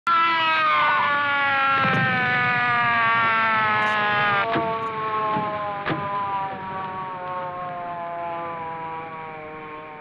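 A police car siren winding down, one steady wail slowly falling in pitch and fading over about ten seconds. A few sharp knocks sound over it in the first six seconds.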